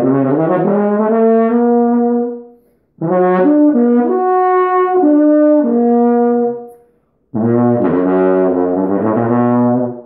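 Carl Fischer ballad horn, a valved flugelhorn-family brass instrument fitted with its shorter crook, played in three phrases of held notes with short breaths between them. The second phrase moves through several different notes.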